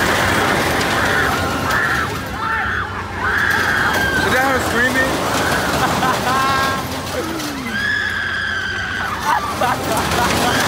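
Riders on a Ring of Fire loop ride screaming: a string of long, high screams, one after another, over a din of other voices.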